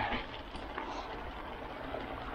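Mountain bike rolling along a leaf-covered dirt trail: a steady rush of tyre noise over the leaf litter with low wind rumble on the action camera's microphone, and a brief louder burst right at the start.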